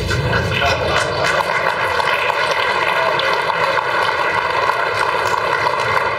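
Audience laughing and clapping in a steady wash of noise after a joke.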